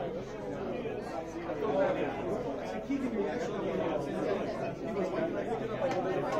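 Crowd chatter: many overlapping voices in a busy indoor hall, with no single voice standing out.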